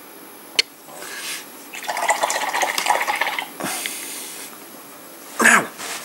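A paintbrush being swished and rattled in a pot of rinse water for about a second and a half, after a single sharp click.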